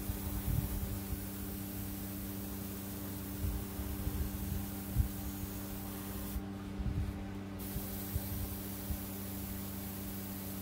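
Airbrush spraying thinned acrylic paint: a steady hiss of air and paint that stops for about a second some six and a half seconds in, then resumes. A steady low hum runs underneath.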